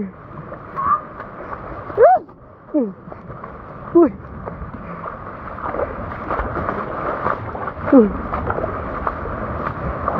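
Steady rushing of a river in sudden flood, louder from about halfway in, with a few short exclamations of "uy" over it.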